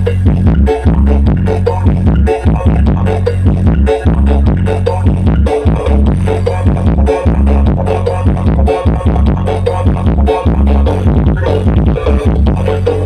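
Loud electronic dance remix with a heavy bass line and a steady, driving beat, played over a big outdoor subwoofer sound system.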